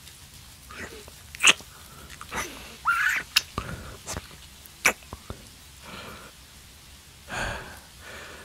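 Close-mic mouth and breath sounds from a man: a few sharp kiss-like lip smacks, a short rising hum about three seconds in, and a soft breath near the end.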